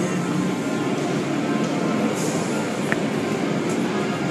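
Automatic car wash running: a steady rush of water spray and machinery noise, with a brief click about three seconds in.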